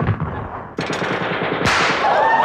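A burst of machine-gun fire: a rapid, even rattle of shots starting just under a second in, with a louder blast near the end.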